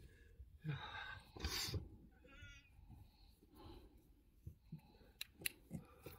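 Faint scraping and shuffling of someone crawling over loose brick rubble in a narrow brick tunnel, with a short squeak about two seconds in and a few light knocks of bricks near the end.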